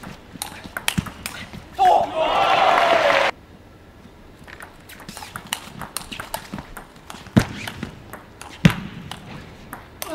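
Table tennis ball clicking off bats and table in quick, irregular strokes during rallies. Near the start a loud burst of crowd cheering and shouting lasts about a second and a half, then cuts off abruptly.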